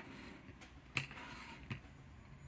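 A few faint light clicks of plastic card holders and stands being moved and set down; the sharpest click comes about a second in.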